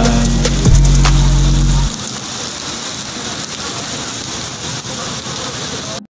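Pop song music with a heavy bass line, which stops abruptly about two seconds in, leaving the steady hiss of heavy rain falling on wet pavement.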